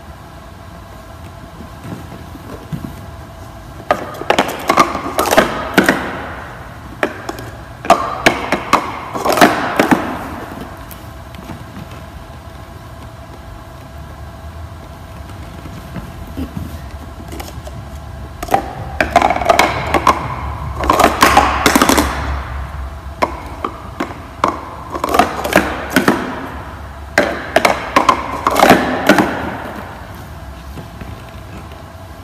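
Plastic stacking cups clattering in quick bursts of rapid clicks as a six stack is built up and taken down, each burst lasting a couple of seconds with quieter gaps between. A faint steady tone runs underneath.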